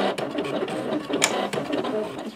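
Silhouette Cameo cutting machine running a cut: its motors drive the blade carriage and mat rollers, with a whine that rises and falls in pitch as it changes direction, and a couple of sharp clicks.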